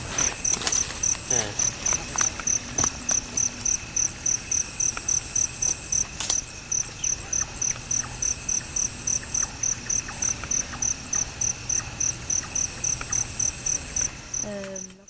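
Night insects: a cricket-like chirp repeating evenly at about three and a half chirps a second, over a steady high insect drone. Scattered faint snaps and rustles of brush and twigs run through it.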